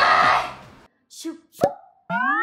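A short cartoon pop sound effect with a quick upward sweep about one and a half seconds in, preceded by a brief blip; a voice over background music fades out in the first half second.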